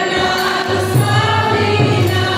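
Devotional kirtan: many voices singing together over a sustained harmonium, with low mridanga drum strokes coming in under the singing after the first half-second or so.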